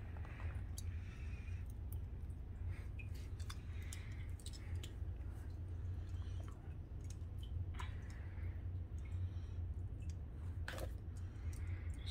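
Irregular small clicks of metal and plastic Beyblade top parts being handled and fitted together, with a steady low hum underneath.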